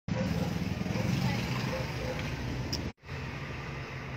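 Brother electric sewing machine running steadily, with voices in the background. The sound cuts off abruptly about three seconds in, and a quieter steady sound follows.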